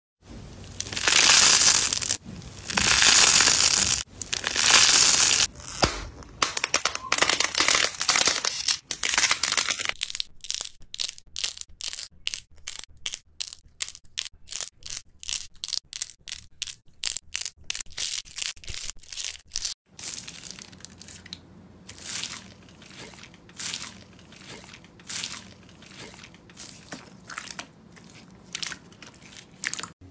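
Crunchy foam slime and clay squeezed by hand. First come three long crunches of a second or so each, then crackling, then a fast even run of sharp snaps about three to four a second, then more spaced crackles.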